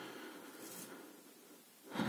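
Faint room tone: a low, even hiss with no distinct sound, fading slightly toward the end.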